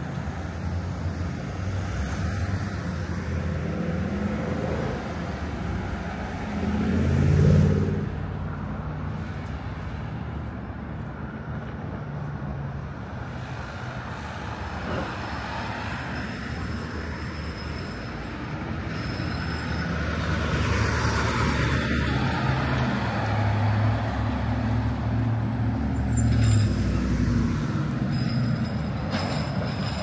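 Street traffic: motor vehicles passing on a city street. The loudest goes by close about seven seconds in, its engine sound rising and then falling away, and engine noise builds again in the second half as more vehicles pass.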